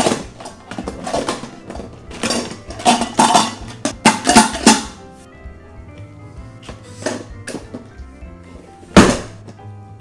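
Background music under the knocks and scrapes of the hard plastic parts of a Petlibro automatic pet feeder being pulled apart and handled, with a cluster of clunks in the first half and one sharp, loud knock near the end.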